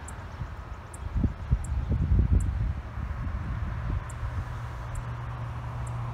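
Wind buffeting the microphone in low gusts, loudest about one to three seconds in, then settling into a low steady hum.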